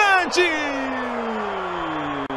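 A man's long drawn-out exclamation that falls steadily in pitch for about two seconds, reacting to a missed chance in front of goal, over steady stadium crowd noise.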